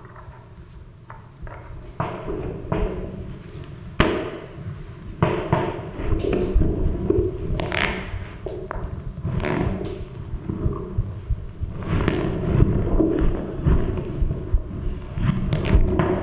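Rough field audio from a handheld phone video: a run of sharp knocks and thuds over a rumbling, crackling noise, with no clear speech.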